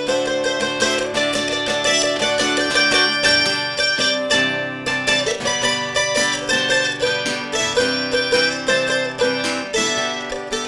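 Mandolin and acoustic guitar playing an instrumental break together: fast picked mandolin notes over guitar chords, with no singing.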